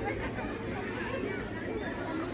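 Chatter of many voices talking at once, a steady murmur with no single speaker standing out.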